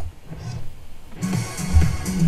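A house music track playing over a bass line; about a second in, a cymbal crash comes in and rings on, marking the start of a new phrase of the track.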